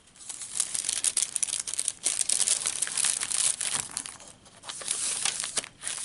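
A glassine paper bag and journal pages crinkling and rustling as they are handled, a dense run of crackles with a short lull about two-thirds through.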